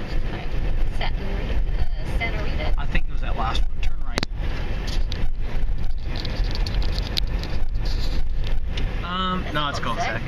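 Car cabin noise while driving: a steady low rumble of engine and road. A single sharp click sounds about four seconds in.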